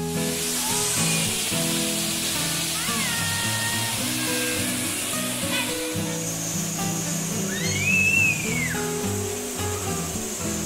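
Background music with held notes and a steady beat, with a tone that rises and falls about eight seconds in.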